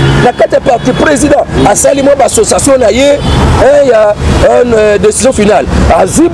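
A man talking continuously; only his speech is heard.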